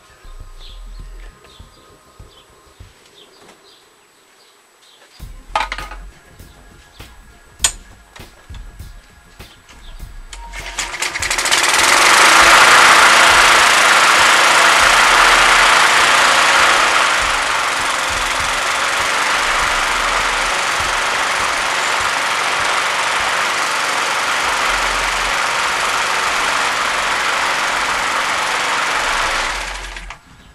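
A 3.5 hp Briggs & Stratton single-cylinder push-mower engine is pull-started and catches on the first pull about ten seconds in. It climbs quickly, is loudest just after catching, then runs steadily before cutting off suddenly near the end. It is running again on a newly fitted replacement fuel tank.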